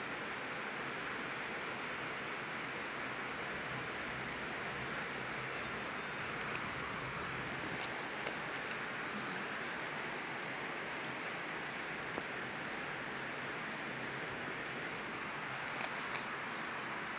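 A steady hiss of background noise, with a few faint clicks, one about halfway through and one near the end.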